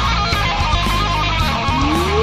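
Heavy rock music: a fast electric guitar solo of quick stepping notes over bass and drums, with a long rising pitch glide starting near the end.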